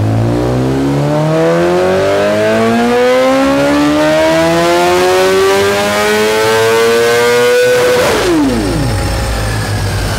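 2023 BMW S1000RR's inline-four engine pulling at full throttle in fifth gear on a chassis dyno, its pitch rising steadily for about eight seconds. Then the throttle shuts and the revs fall away.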